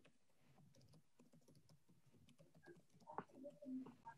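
Near silence on a video call, with faint scattered clicks and a brief faint murmur near the end.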